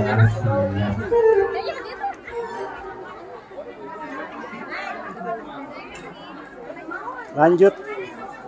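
Chatter: several people talking at once. A man's voice holds one long note in the first second, and a louder voice breaks in near the end.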